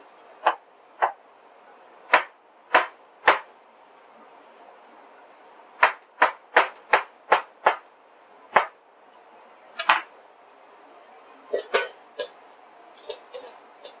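Chef's knife chopping through watermelon flesh and knocking on a plastic cutting board: single chops at first, then a quick run of about three chops a second around the middle, then scattered lighter taps near the end.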